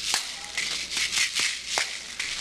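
Two caxirolas, green plastic shakers, one in each hand, shaken in a quick steady rhythm of crisp rattling strokes, several a second, playing a capoeira rhythm.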